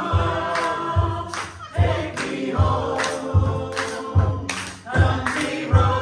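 Live acoustic performance: voices singing over acoustic guitar, with handclaps on the beat about every three-quarters of a second.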